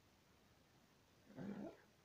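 Near silence, then a single short low vocal sound of about half a second, a little past the middle.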